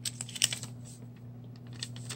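Small paper pieces and craft embellishments being handled and set down on a work board, making a quick cluster of light clicks and taps, mostly in the first half-second and again near the end, over a steady low hum.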